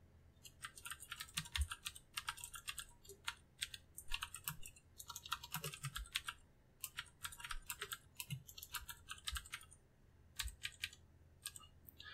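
Computer keyboard being typed on: quick, irregular runs of keystrokes with brief gaps, pausing near the end.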